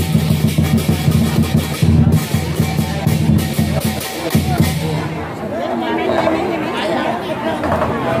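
Lion-dance drum and cymbals beating in a fast, dense roll, stopping about halfway through, after which crowd voices and chatter carry on.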